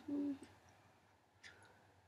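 A woman's short, steady 'oo'-like vocal tone, lasting about a third of a second, followed by quiet with a faint tick about a second and a half in.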